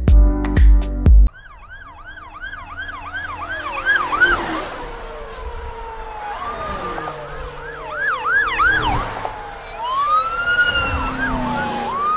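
A beat of music in the first second, then sirens: a fast yelp that swoops down and up about three times a second, with overlapping sirens joining in and a slower rising-and-falling wail near the end.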